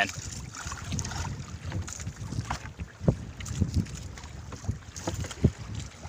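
Wind rumbling on the microphone, with a few short sharp clicks and knocks, most of them in the second half, as hands fasten wires to a car battery's terminals.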